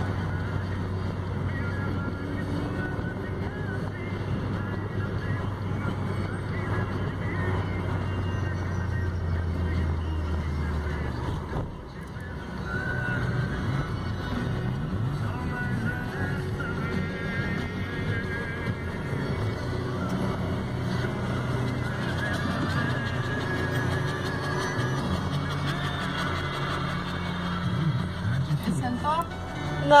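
Steady low drone of a car's engine and road noise heard inside the cabin, with music playing; the drone drops out about ten seconds in.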